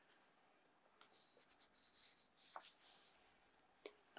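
Near silence with faint rustling of a handheld paper sheet for about two seconds in the middle, and a couple of tiny clicks near the end.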